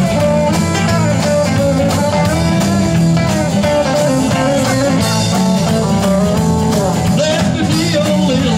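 Live rock and roll band playing an instrumental passage: electric guitars over bass and drums with a steady beat.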